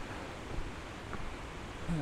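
Waterfall on the River Swale heard from a distance: a faint, steady rush of falling water with no distinct sounds in it.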